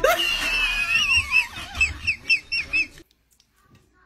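A high-pitched, wavering squeal, then a quick run of short yelping calls, about six in a second, cut off abruptly about three seconds in.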